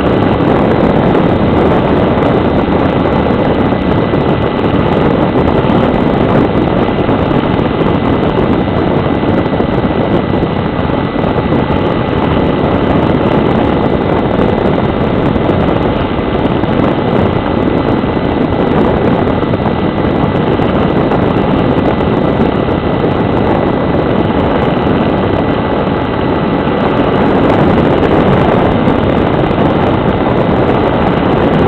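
A model aeroplane's motor and propeller running steadily in flight, mixed with wind rush, heard close up from a camera mounted on the airframe, with a thin high whine held throughout.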